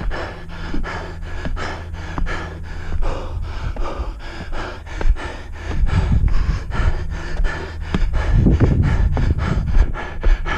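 A runner panting hard while climbing steep steps at speed, with short regular beats of footfalls and breath about three times a second.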